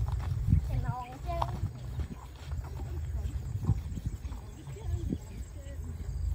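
Footsteps of several people walking on a dirt track, sandals slapping at irregular intervals, over a steady low rumble of wind on the microphone.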